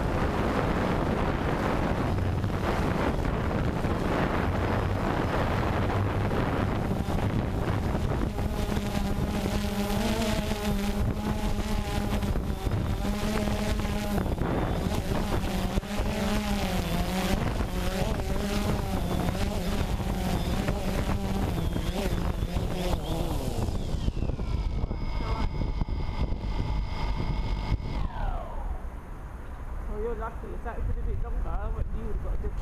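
DJI Phantom 2 quadcopter's electric motors and propellers buzzing, heard from its onboard camera with wind on the microphone; the buzz wavers in pitch, then falls twice near the end as the motors spin down with the quadcopter sitting on the ground.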